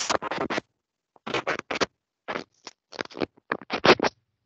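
Scratching, rustling noises in about five short clusters separated by brief gaps, picked up close to an open call microphone.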